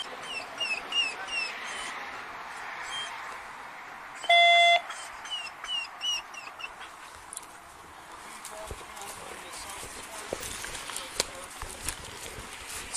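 A single electronic beep, a steady tone lasting about half a second, about four seconds in and louder than anything else. Before and after it come two quick runs of four or five short, high, falling chirps from an animal, over a steady background hiss.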